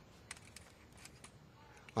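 Faint handling sounds of plastic sunglasses being slid out through a slot in a cloth cap's visor: a few light scattered clicks and soft rubbing.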